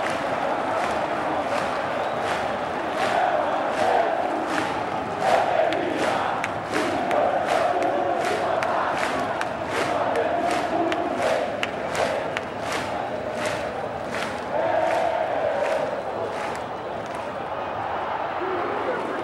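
Large football stadium crowd of Flamengo supporters chanting in unison, with sharp rhythmic beats about twice a second under the singing.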